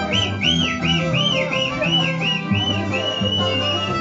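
Live Andean folk music from a string band: steady plucked bass notes under a high melody of quick swooping notes, about two a second, that settles into one held note near the end.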